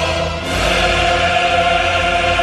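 A large male military choir singing long sustained chords; the sound dips briefly about half a second in, then a new chord is held.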